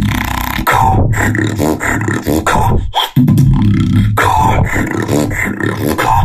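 Solo human beatboxing: a sustained low vocal bass layered with mouth-made clicks and snares, with a short break about three seconds in.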